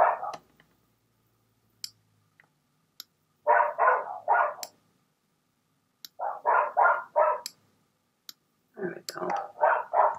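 A dog barking in three short runs, three barks, then four, then about five, with a few faint clicks from a computer mouse in between.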